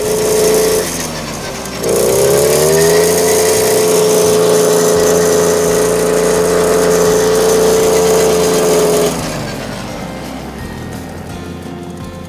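Small Suzuki 50 cc engine running. It revs up steeply about two seconds in, holds a steady high note for several seconds, then drops back near the end.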